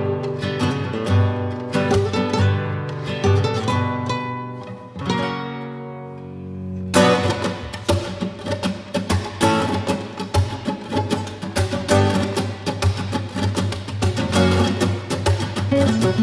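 Two nylon-string Spanish guitars played together in a flamenco style. Picked melody notes over chords give way to a chord left to ring and die away, then fast, loud rhythmic strumming starts suddenly about seven seconds in.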